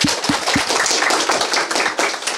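A class of schoolchildren applauding: many hands clapping at once in a dense, steady patter, with a few low thumps in the first half second.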